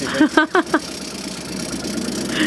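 Boat's outboard motor idling steadily at trolling speed, with a few short bursts of voice in the first second.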